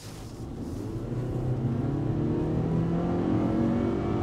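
Geely Monjaro's turbocharged petrol engine under full-throttle acceleration in Sport mode, heard from inside the cabin. The engine note rises steadily in pitch and grows louder as the SUV pulls hard from near standstill.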